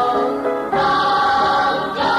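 A choir singing held notes of a Vietnamese song with musical accompaniment, moving to a new note about two-thirds of a second in.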